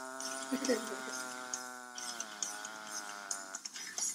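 A man's voice holding one long, buzzy, nasal note that sags slightly in pitch midway and cuts off suddenly shortly before the end.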